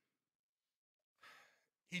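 Near silence, then a man's short audible breath about a second in, just before he speaks again.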